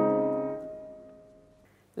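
Steinway grand piano chord held and ringing, dying away to silence within about a second and a half.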